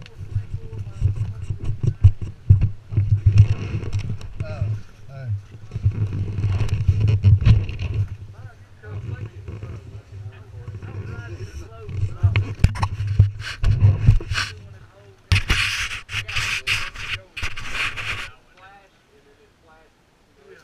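Muffled talking buried under heavy rubbing and knocking on the microphone as a body-worn action camera is handled and moved around. A loud hiss near the end.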